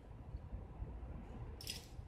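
Quiet outdoor background with a steady low rumble, and one brief hiss near the end.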